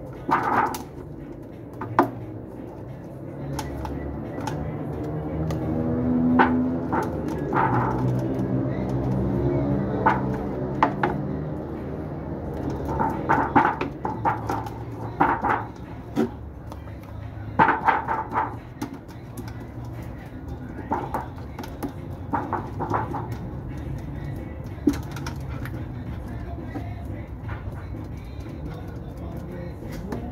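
Indistinct background voices and music, with scattered light taps and knocks from handling.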